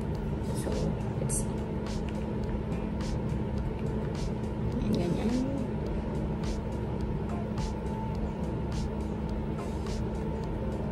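Soft, irregular brushing strokes of a makeup brush sweeping powder over the face, heard over a steady low background rumble and hum.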